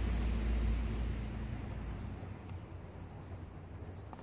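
A low rumble that fades away over the first two seconds, leaving faint room noise.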